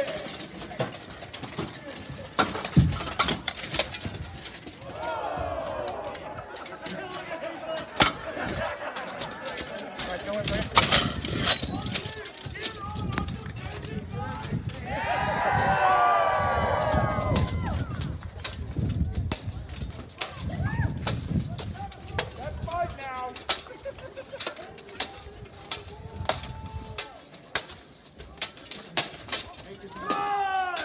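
Armoured combat: weapons striking steel plate armour and shields, a scattered series of sharp metallic clangs and knocks throughout. Bursts of people shouting come in between, loudest about halfway through.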